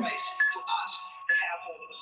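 A man's voice speaking over background music with held notes, heard through a video call's audio.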